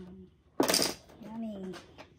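Mahjong tiles clacking sharply on the table about half a second in, followed by a short murmur from one of the players.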